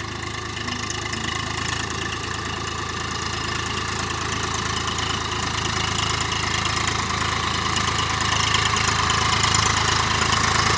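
Swaraj 855 FE tractor's three-cylinder diesel engine running steadily under load as the tractor drives through the field, growing louder as it comes closer.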